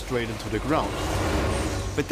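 A voice speaking briefly, then a steady rushing noise with a low hum underneath.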